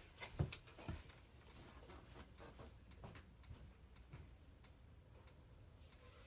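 Two soft knocks within the first second, then faint scattered clicks, as of small objects being handled and set down in a quiet room.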